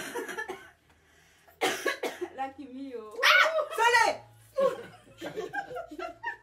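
Several people laughing and shrieking in bursts, with no words; the loudest, highest-pitched burst comes about three seconds in and lasts about a second.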